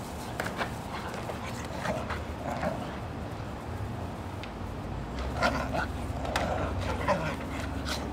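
Two dogs play-fighting, with short dog vocalizations and scuffling, and sharp clicks and knocks from the clear plastic cone collar one of them wears as they tussle.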